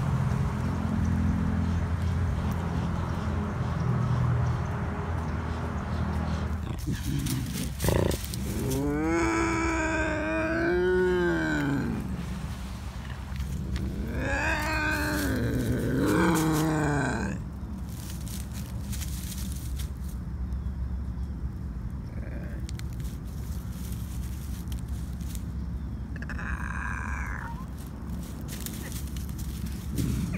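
Bobcat yowling: two long, wavering calls of about three seconds each that rise and fall in pitch, the angry call of an agitated cat, with a shorter, fainter call near the end. A steady low hum runs through the first several seconds.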